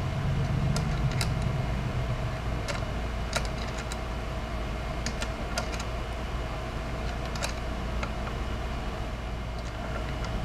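Hex wrench clicking in a truss rod nut as a new nut is turned onto a Fender Stratocaster's truss rod. The light metal clicks come at irregular intervals over a steady low hum.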